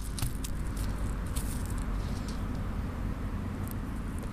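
A steady low rumble of wind on the microphone, with scattered short crackles and rustles of grass and soil being handled by hand.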